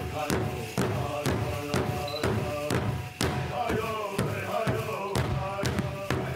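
Powwow drum group: several men striking a large hide-covered powwow drum with sticks in a steady beat, about two strikes a second, while singing a chant together.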